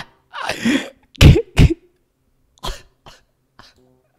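A man laughing hard in short breathy bursts, about six of them, the loudest around a second in and the last few smaller and further apart.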